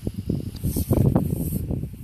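Wind buffeting the microphone: an irregular low rumble with no steady tone.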